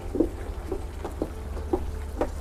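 Footsteps on a wooden deck, about two steps a second, over a steady low rumble.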